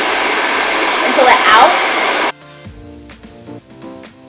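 Hand-held hair dryer blowing at full power into hair worked over a round brush, then cutting off abruptly just over two seconds in. Light background music with plucked notes follows.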